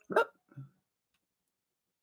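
A short, sharp vocal sound, then a softer, lower one about half a second later.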